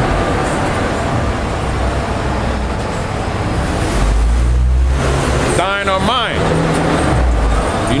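A bus drives past on a city street through steady traffic noise. Its deep engine rumble is loudest about four to five seconds in.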